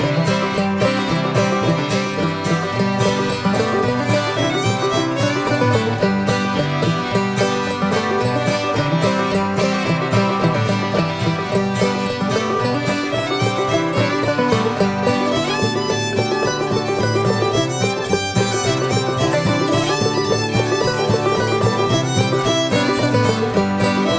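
Old-time string band playing a lively dance tune, the fiddle leading over banjo, hammered dulcimer and guitar.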